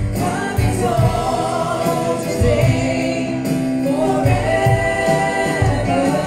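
Live gospel worship song: a woman singing long held notes over an electronic keyboard, with a steady beat underneath.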